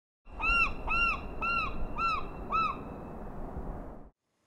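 Glaucous-winged gull calling: a series of five short, arched cries, about two a second, over a low steady rumble.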